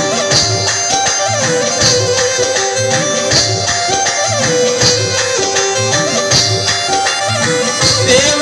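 Instrumental Rajasthani folk music played through a DJ loudspeaker. A held melody line repeats a short phrase about every second and a half over a steady drum beat.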